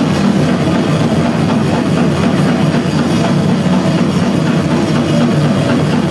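Death metal band playing live and loud: distorted electric guitars and drum kit in a dense, unbroken wall of sound, recorded from within the crowd.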